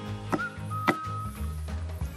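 A kitchen knife chopping a tomato on a wooden cutting board: two sharp strikes, the second the louder, over background music with a steady bass and a held whistle-like tone.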